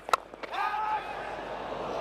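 Crack of a cricket bat striking the ball, followed by a held shout and a steady hum of crowd noise as the ball runs away.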